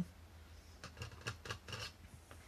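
A quick run of small, faint scratchy clicks and rubs, starting about a second in and lasting under a second, from hands handling paint brushes and paint pots on a hobby desk.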